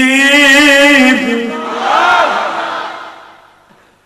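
A man's voice chanting Quran recitation in the melodic tilawah style: one long held note with a slight waver, breaking off about a second in, then a short ornamented phrase that dies away in an echo.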